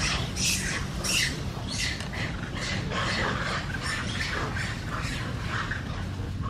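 Baby macaque screeching in a rapid series of short, high-pitched cries, several a second, loudest in the first two seconds; distressed, angry crying.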